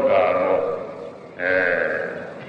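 Mahasi Sayadaw's voice giving a Burmese Dhamma sermon, in two long drawn-out syllables: one fading out in the first half, another beginning about a second and a half in.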